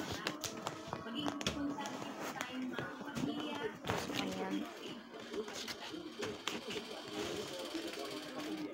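Background voices and music, with the crisp rustle and short clicks of a sheet of paper being folded and pressed flat by hand.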